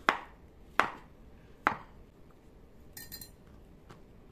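Kitchen knife slicing through a banana and knocking on a wooden cutting board: three sharp knocks, a little under a second apart. Near the end, a brief light clink of glass.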